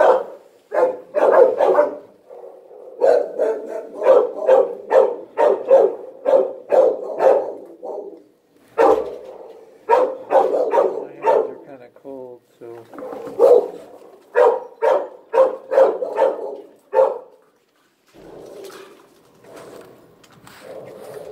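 A dog barking over and over, about two barks a second, in runs that pause briefly twice and stop a few seconds before the end.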